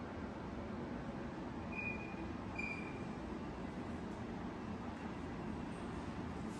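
Steady low background rumble of an indoor space, with two short high chirps close together about two seconds in.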